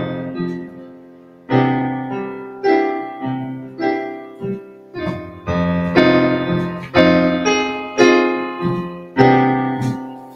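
Digital piano playing a series of sustained chords, struck roughly once a second and each left to ring and fade. They are the C major progression with an F minor chord borrowed from C minor: a minor plagal cadence, the minor IV resolving to the I.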